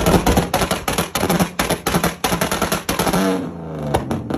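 A modified car's exhaust popping and banging in a rapid, irregular string of loud, gunshot-like cracks, several a second, while the engine is held at revs. These are the exhaust pops that were mistaken for gunfire. About three seconds in, the bangs stop and the engine is heard falling back in pitch.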